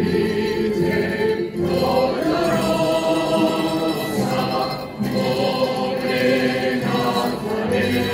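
A choir singing a slow devotional hymn in long held notes, with short breaks about one and a half and five seconds in.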